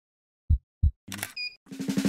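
Intro sound effects: paired low thumps like a slow heartbeat, twice about a second apart. About a second in comes a click with a short electronic beep, then a rapid run of camera-shutter-like clicks that leads into music.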